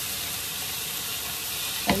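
Steady sizzling hiss of food frying in a pan.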